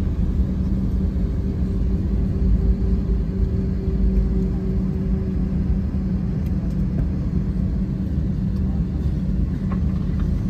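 Airbus A321 cabin noise while taxiing: a steady low rumble from the engines and the rolling aircraft, with a constant hum under it. A higher steady tone fades out about six seconds in.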